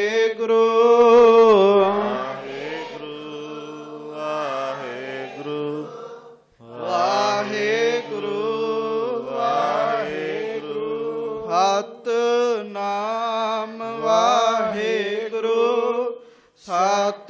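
A man chanting a Sikh devotional chant in long, melodic phrases over a steady held drone, with a brief break about six and a half seconds in.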